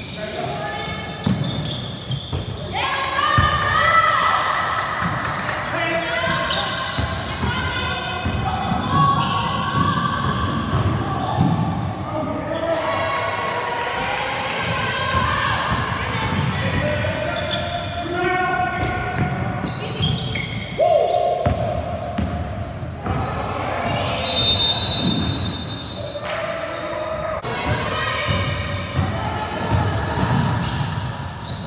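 Basketball being dribbled on a hardwood gym floor, with players' voices calling out, echoing in a large hall.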